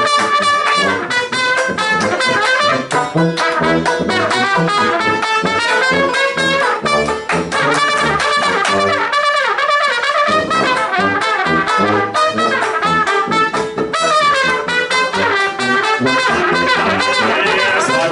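Trad jazz band playing an instrumental chorus, a trumpet leading over sousaphone bass and strummed banjo with a steady beat.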